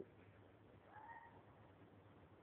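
Near silence, broken about a second in by one faint, short animal call that rises slightly and then holds briefly.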